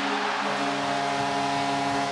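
Hockey arena goal horn blaring a steady held chord over a cheering crowd, signalling a home-team goal.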